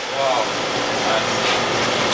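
Steady, loud rush of machinery noise that does not let up, with a brief snatch of people talking about a half-second in.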